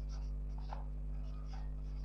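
Felt-tip marker writing on a whiteboard: a series of faint short scratchy strokes as the letters are drawn, over a steady low hum.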